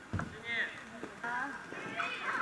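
Children shouting and calling out during play: short, high-pitched calls that rise and fall in pitch. A low thump comes just after the start.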